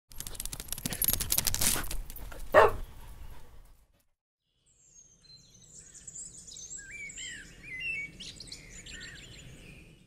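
A noisy burst full of crackling clicks, with a sharp sound about two and a half seconds in, stops near four seconds. After a second of silence, birds chirp and twitter in quick, gliding calls over faint outdoor background noise.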